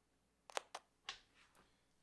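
Banana plugs being handled and pushed into a speaker's terminal posts: a few short, sharp clicks, a quick pair about half a second in, then two softer ones.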